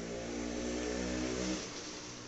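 A low, steady engine-like hum that fades out about a second and a half in.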